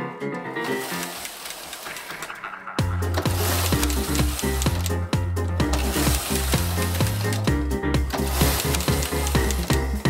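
Background music; a steady bass line comes in about three seconds in. Under it, the swishing rattle of a knitting machine carriage being pushed back and forth across the needle bed.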